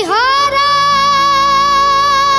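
A boy singing with backing music, swooping up into one long held note that he sustains steadily.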